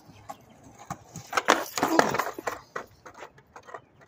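Skateboard rolling on concrete with a few clicks, then a loud scraping slide of the board along a flat bar lasting about a second, followed by scattered clacks as the board comes off.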